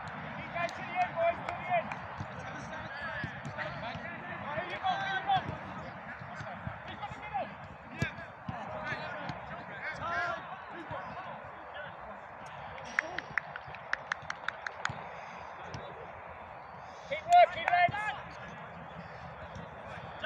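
Footballers calling and shouting to each other across an outdoor pitch, over a steady hum of outdoor noise, with a loud shout near the end. In the middle comes a quick run of about eight sharp taps.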